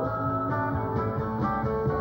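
Instrumental break in a country song: a guitar plays the lead over the band's steady backing.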